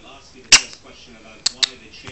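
Three sharp clicks: a loud one about half a second in, then two quieter ones in quick succession near the end.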